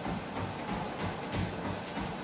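A runner's footfalls striking a motorized treadmill belt at about three steps a second, over the treadmill's steady running. The treadmill is set to a steep incline at a hard pace.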